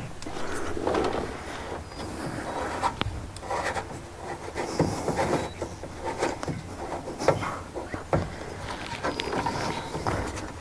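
Hands turning and working the ignition switch and its retaining ring in an old Chevrolet truck's dash: irregular small clicks, scrapes and rubbing of metal and plastic.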